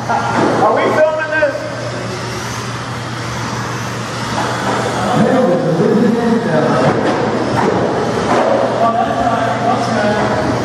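Voices talking in a large room over 1/16-scale Traxxas electric RC cars racing on a carpet track.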